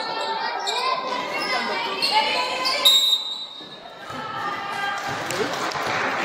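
The echoing sound of a youth basketball game in a gym: players and spectators talking and calling out, with a short, high whistle blast about three seconds in. After a brief lull, the chatter builds again.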